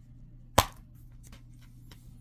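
Plastic Blu-ray case snapping open with one sharp click, followed by a few faint plastic ticks.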